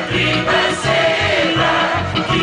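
Slovenian folk band playing live: accordion, acoustic guitar and double bass under sung vocals, with a regular pulsing bass beat.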